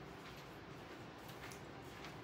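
Quiet room tone with a few faint, light ticks.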